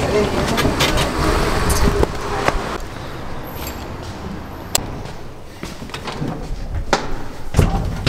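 Rumbling noise inside a moving city bus, then after a cut a quieter interior with a few sharp clicks as a lift call button is pressed.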